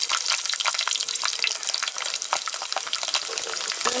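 Garlic cloves frying in hot oil in an earthen clay pot: a steady loud sizzle with constant small crackles and pops. Near the end a ladle starts stirring them.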